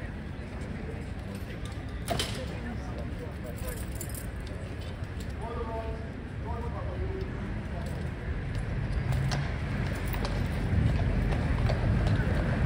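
Outdoor ambience with a few distant voices, and light metallic jingling and a sharp clink about two seconds in as a mounted cavalry trooper dismounts with his sword and tack. A low rumble builds near the end.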